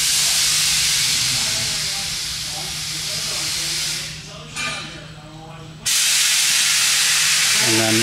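Loud steady hiss with a low hum beneath it; the hiss fades out about four seconds in and comes back suddenly about two seconds later.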